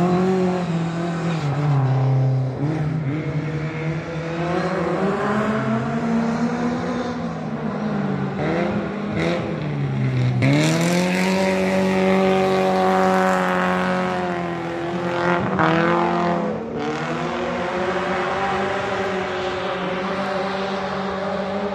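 A race car's engine being driven hard, its pitch climbing and dropping again and again as it revs and shifts; about halfway through it drops low, then climbs sharply and holds a high steady pitch before falling and rising once more near the end.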